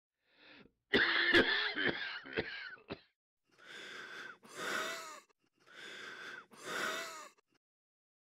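A person's harsh coughing fit, several sharp coughs starting about a second in and lasting about two seconds, followed by two slow, wheezing breaths, each drawn in and then let out.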